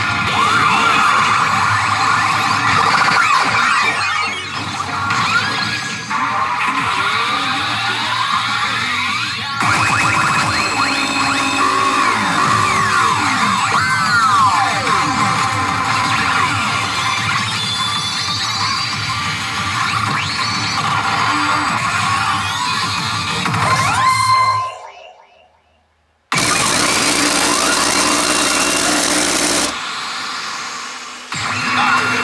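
A pachinko machine's own music and sound effects, loud and dense, with many swooping, gliding effect tones over the music. About two-thirds of the way through, the sound fades out to silence for under two seconds, then comes back at full level as the frame lights flash.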